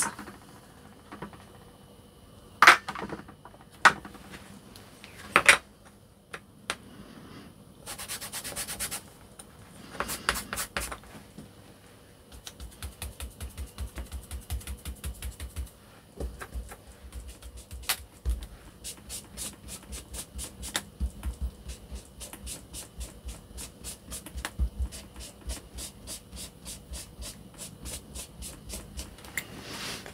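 An ink blending tool rubbing ink through a paper stencil onto cardstock: after a few sharp knocks, quick, regular scrubbing strokes, several a second, that run through most of the second half.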